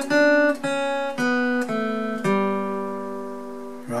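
Steel-string acoustic guitar, capoed at the second fret, fingerpicked slowly one note at a time: five single notes about half a second apart, the last left ringing and fading out.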